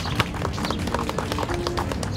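Crowd applauding, with dense, steady clapping.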